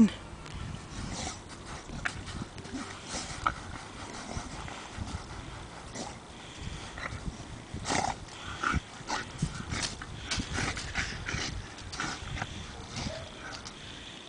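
A Staffordshire bull terrier digging in sand: irregular scratching and scuffing as its front paws scrape and throw sand, in uneven spurts.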